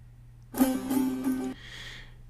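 A long-necked Persian lute plays a quick tremolo on one held note for about a second, starting about half a second in, then rings away.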